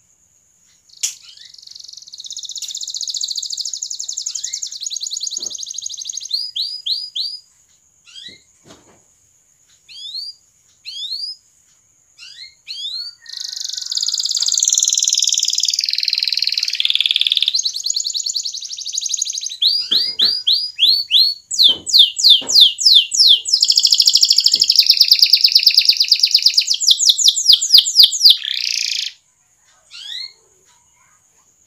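Domestic canary singing: rapid rolling trills and quick rising chirps. The song comes in a first bout, then short scattered phrases, then a long, louder stretch of continuous trilling that stops abruptly near the end.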